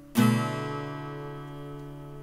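Acoustic guitar, its B string tuned down to A, strumming one chord once just after the start: the seventh fret on the E and G strings with the other strings open. The chord is then left to ring, fading slowly.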